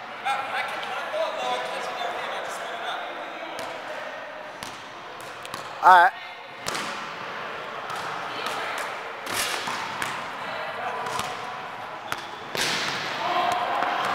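Basketball bouncing on a hardwood gym floor, irregular single thuds a second or so apart that echo in the large hall, with a few harder hits near the end.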